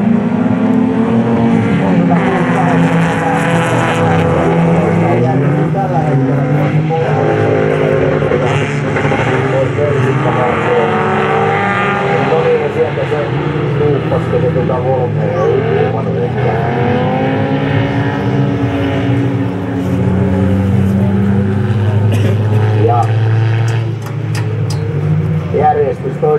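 Several folkrace cars' engines racing at once, each repeatedly revving up and dropping back as they shift gears, overlapping with one another.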